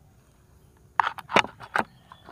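Close handling noise: a quick run of five or six sharp taps and knocks about a second in, after a near-quiet start.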